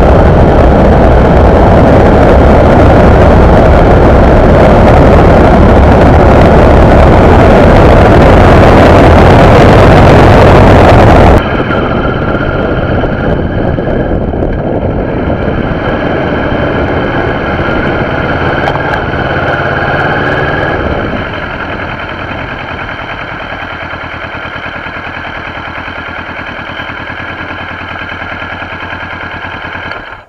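Kawasaki Ninja 650R parallel-twin running at road speed, with loud, steady wind noise over the microphone. About eleven seconds in the sound cuts to a quieter recording where the bike's engine runs with a steady whine. It drops in level again about twenty seconds in.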